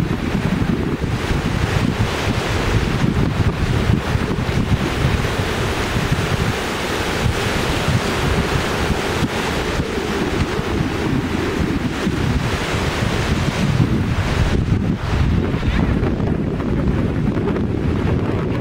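Small waves washing in and out over the shallows at the sea's edge, with steady wind noise on the microphone.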